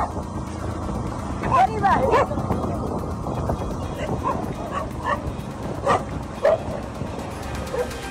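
A dog barking and yipping in short bursts over a steady low rumble: a flurry of barks about two seconds in, then scattered single barks through the rest.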